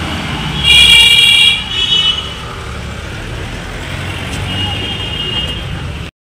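Police jeep engine running with a steady low rumble as the vehicle moves, and a horn sounding loudly for about a second near the start, then more faintly again near the end.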